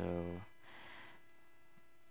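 A drawn-out spoken "so" that fades out after about half a second, leaving a faint, steady electrical mains hum on the recording.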